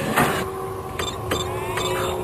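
Animated sci-fi computer console sound effects: a few sharp electronic clicks and bleeps as its buttons are pressed, with short rising electronic tones near the end, over a steady electronic drone.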